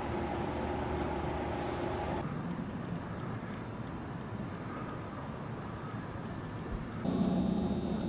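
Steady background hum and rumble of outdoor ambience, with no distinct events. It shifts abruptly at edit cuts about two seconds in and again about a second before the end, where a steadier indoor room hum with a low tone takes over.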